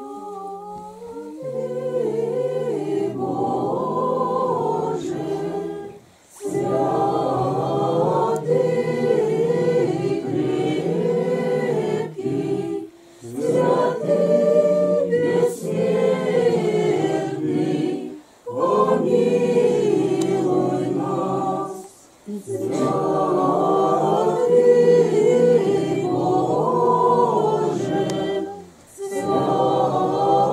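A congregation singing Orthodox liturgical chant a cappella, in long phrases broken by short pauses for breath.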